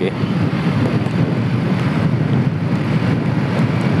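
Hero Splendor motorcycle cruising at a steady speed: a single-cylinder four-stroke engine running under an even rush of wind and road noise.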